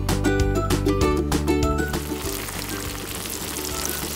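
Background music for the first half, then flour-coated pork deep-frying in a pot of hot oil: a dense, steady sizzle takes over about halfway through as the music drops back.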